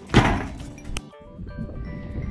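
Background music with steady held notes. Near the start a single loud thump dies away over about half a second, followed by a short click, and then the sound cuts abruptly.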